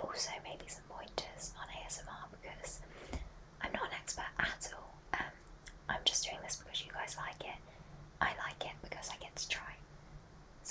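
A woman whispering close to the microphone, in short breathy phrases with crisp hissing s-sounds and small clicks.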